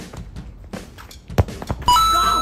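A football kicked hard on a snowy pitch, one sharp thud about one and a half seconds in after a few light run-up footsteps. A short edited musical sound effect starts just before the end.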